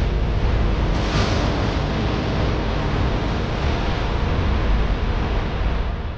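Steady, wind-like cinematic noise with a deep rumble underneath, swelling briefly in a whoosh about a second in.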